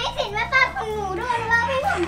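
High-pitched voices of a young child and a woman chattering and exclaiming playfully, with no clear words.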